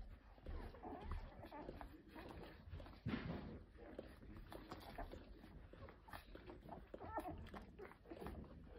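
Ten-day-old golden retriever puppies nursing: faint suckling clicks with a few small squeaks.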